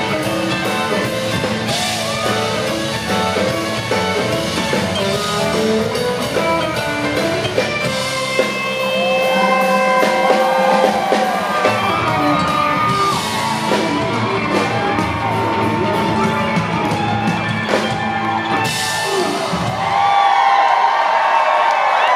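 Live country band playing a song's closing section on acoustic and electric guitars, fiddle and drums; the band stops about 20 seconds in and the crowd cheers and whoops.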